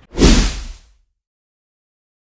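A single whoosh sound effect of the kind used in an animated logo outro, swelling quickly and fading out within about a second, followed by silence.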